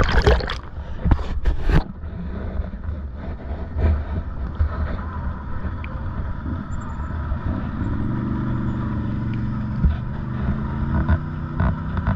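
ATV engines running, with several loud bumps in the first two seconds. From about eight seconds in, an engine's pitch rises as an ATV works through a muddy, water-filled ditch.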